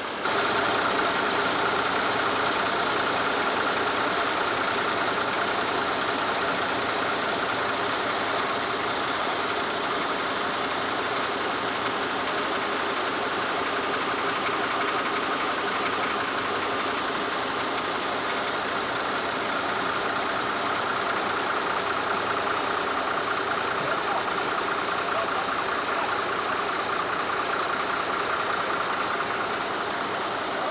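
Heavy diesel farm machinery running steadily: a continuous engine drone with a constant high hum over it. It begins abruptly at the start.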